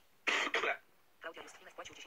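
A man coughing once: a single harsh burst of about half a second, a quarter second in.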